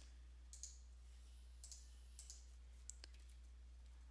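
Faint computer mouse clicks, about four pairs of them spread over a few seconds, over a low steady electrical hum.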